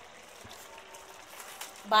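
Faint, even bubbling of a pot of rice pulao simmering, its water nearly cooked off.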